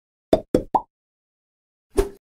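Cartoon plop sound effects of an animated logo intro: three quick plops within the first second, the third higher in pitch, then a fourth plop near the end.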